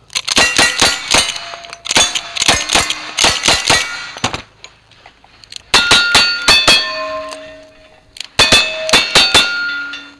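Rapid strings of shots from a lever-action rifle and then a single-action revolver, each hit followed by the ringing of steel plate targets. The shots come in four quick bursts with brief pauses between them.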